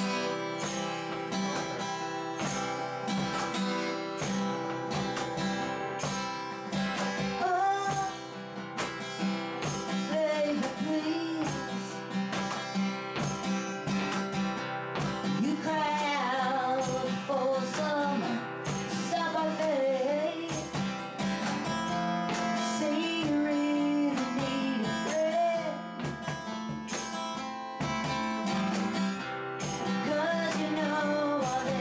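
A woman singing a country-flavoured song to her own strummed steel-string acoustic guitar. The guitar plays alone for the first seven seconds or so before the voice comes in.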